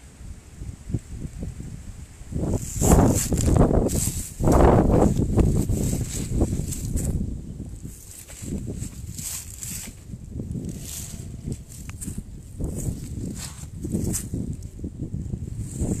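Footsteps and shuffling in dry fallen leaves and grass: irregular rustling crunches, loudest a few seconds in.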